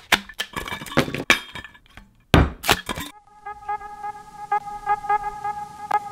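Clicks and knocks of a black stainless-steel Hydro Flask bottle and its lid being handled and opened, the loudest pair about two and a half seconds in. About three seconds in, background music with steady held tones and a regular beat takes over.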